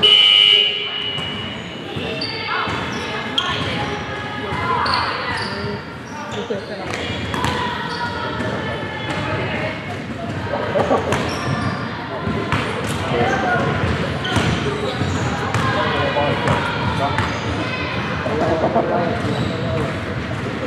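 A referee's whistle blows once at the very start, a sharp steady tone a little under a second long. After it come voices calling out in a large, echoing sports hall and the thuds of a basketball bouncing on the wooden floor.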